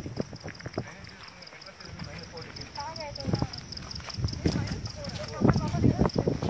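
Indistinct voices of a group walking on a dirt forest trail, with their footsteps, over a steady high insect trill that pulses several times a second. The voices rise again near the end.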